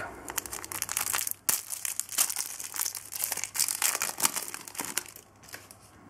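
Foil wrapper of a trading-card packet being torn open and crinkled, a dense crackling rustle that dies down about five seconds in as the cards come out.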